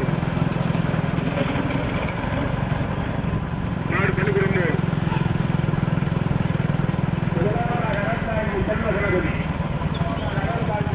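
A vehicle engine runs steadily as a low drone, with men's voices calling out about four seconds in and again near the end.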